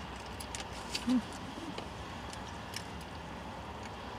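Quiet car-cabin background with a steady low rumble, a few faint small clicks, and a brief closed-mouth "mm" about a second in, while a frozen drink is sipped through a straw.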